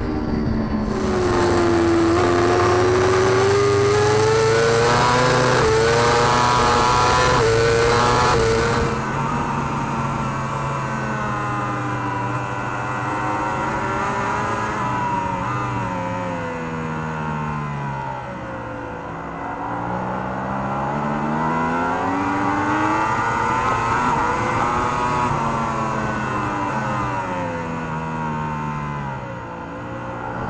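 Onboard sound of a Kawasaki ZX-10RR superbike's inline-four at high revs, its pitch climbing steadily under acceleration with a loud rush of wind. About nine seconds in the sound changes to a Yamaha R1 superbike's inline-four, whose pitch falls to a low point around twenty seconds in, then rises again and falls once more near the end.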